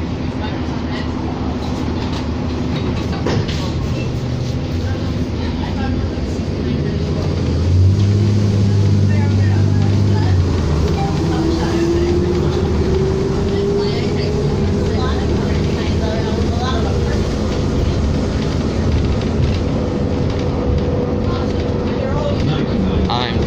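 Inside a 2007 New Flyer D40LFR diesel city bus under way: steady engine drone and road noise. A loud low drone sets in about eight seconds in and holds for a couple of seconds, then a whine rises in pitch over the next few seconds.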